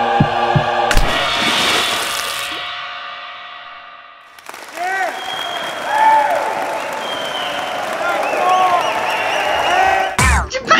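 A thumping music cue cuts off about a second in with a big belly-flop splash into a pool, its wash of water noise dying away over about three seconds. Then a crowd cheers, with rising and falling whoops.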